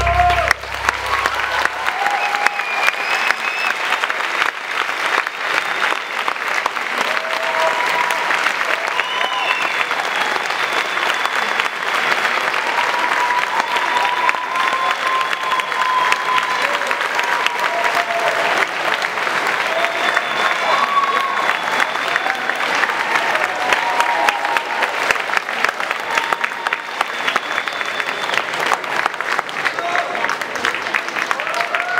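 Audience applauding steadily just as the music cuts off at the very start, with voices calling out over the clapping.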